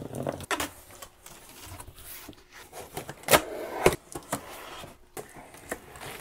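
Unboxing sounds: packing tape being slit on a large cardboard box, then cardboard flaps pulled open and plastic packaging rustling, with two sharp clacks a little past the middle.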